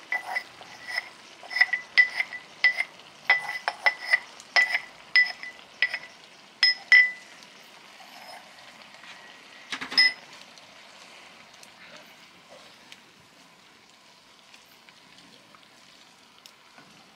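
A small ceramic jug clinking over and over as a utensil taps and scrapes the last cashew cream out of it, about two bright ringing clinks a second for some seven seconds. One more clink comes about ten seconds in.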